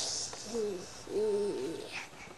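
A brief hiss, then two low cooing hoots: a short one about half a second in, followed by a longer, wavering one.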